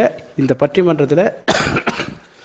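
A person talking, then a single short cough about one and a half seconds in.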